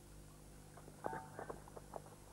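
A brief scuffle: a few faint knocks and rustles, with a short pitched sound about a second in, over a low steady hum.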